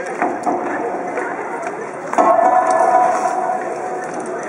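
Wooden naruko clappers clacking a few times. From about halfway, a voice holds one long call.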